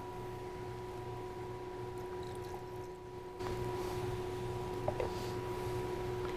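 Quiet room tone carrying a steady electrical hum with a thin, even whine. The background steps up slightly a little past halfway, and there is one faint click near the end.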